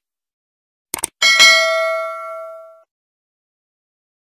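Two quick mouse-click sound effects about a second in, then a bright notification-bell ding that rings out and fades over about a second and a half. This is the click-and-chime of an animated subscribe button.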